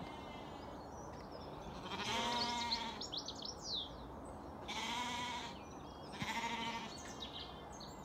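Zwartbles lambs bleating three times, calling for their ewe, who is hardly answering. A bird chirps briefly between the first and second bleats.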